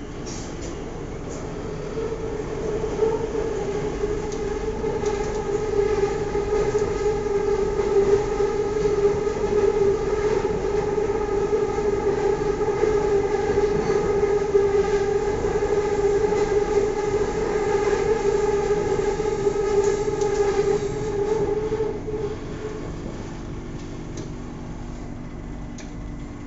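Bangkok BTS Skytrain car running along the elevated line, heard from inside the car: a steady electric hum over the rumble of wheels on track. It builds in the first couple of seconds and eases off about three-quarters of the way through.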